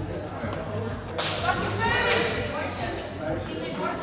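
A volleyball struck hard twice in play, two sharp smacks about a second apart, the first a little over a second in, each echoing briefly in the sports hall.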